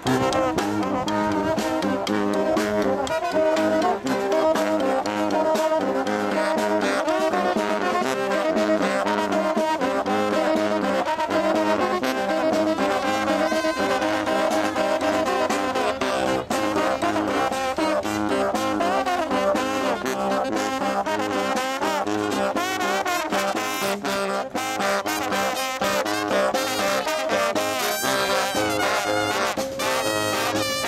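Street brass band playing live and loud: sousaphone bass line, trombone, trumpet, and baritone and tenor saxophones over a snare drum beat.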